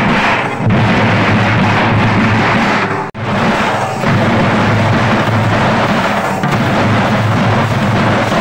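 A troupe of drummers beating large double-headed drums with sticks in a loud, continuous, heavy rhythm. The sound cuts out sharply for an instant about three seconds in, then resumes.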